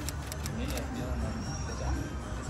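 Indoor room tone: faint background music and distant voices over a steady low hum, with a few light clicks in the first second.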